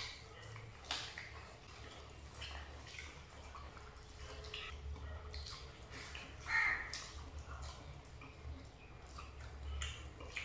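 Eating sounds: faint wet smacking and squishing as rice and curry are mixed by hand and chewed, with scattered short clicks and one louder wet smack about two-thirds of the way in, over a steady low hum.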